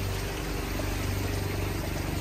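Water flowing through a running pond filter, over a steady low mechanical hum.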